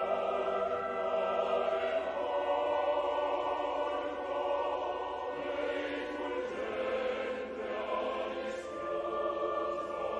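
Opera chorus singing with orchestra, a slow passage of long held chords.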